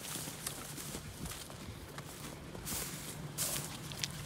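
Footsteps on wet mud and slushy snow, a few irregular steps, over a faint steady low hum.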